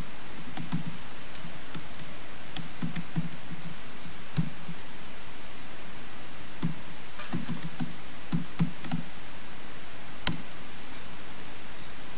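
Typing on a laptop keyboard: scattered, irregular soft knocks and clicks over a steady hiss, with a sharper click about ten seconds in.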